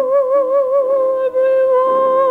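A high voice holds one long sung note with steady vibrato over lower sustained accompanying notes, breaking off briefly past the middle and then resuming on the same pitch.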